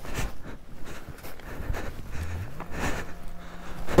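Gloved hands scraping and crunching snow around a snowmobile stuck on its side in deep powder: scratchy, irregular rustling with short clicks. A faint low hum rises in pitch a little past halfway.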